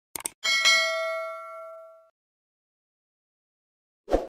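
Subscribe-button animation sound effect: two quick mouse clicks, then a bell ding that rings and fades out over about a second and a half.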